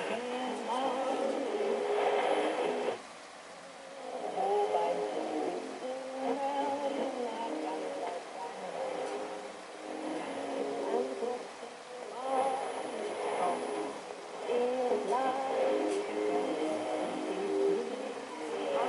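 Shortwave broadcast on 6070 kHz coming through a homemade receiver's speaker: a voice and music on AM radio, as the set is fine-tuned, briefly dropping in level about three seconds in.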